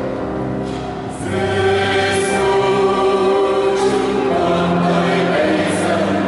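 Mixed choir of women's and men's voices singing a Vietnamese hymn. It comes in about a second in over a keyboard accompaniment that was playing alone just before.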